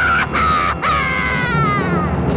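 Comic crying sound effect: a wailing voice in short sobs, then one long wail falling in pitch.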